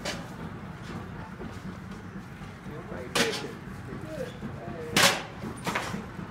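Four sharp knocks or bangs over a steady background hubbub with faint voices, the loudest about five seconds in.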